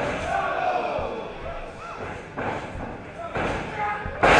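Wrestlers' bodies thudding against the ring corner and the canvas, a few separate impacts, with crowd voices echoing in a hall.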